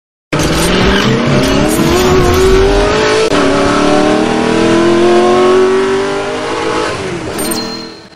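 Car engine accelerating hard, its pitch rising through one gear, dropping at a shift about three seconds in, then rising through the next before fading out near the end.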